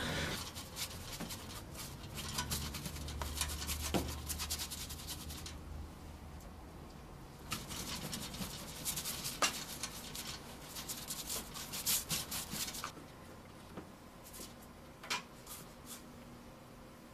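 Paintbrush scrubbing and scratching on canvas in two spells, with a pause about five seconds in. There are scattered light clicks, and the sound dies away about three seconds before the end.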